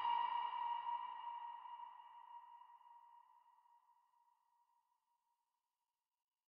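Ringing echo tail left after a dark synthwave beat stops, a single pitched tone that fades out over about three seconds, then silence.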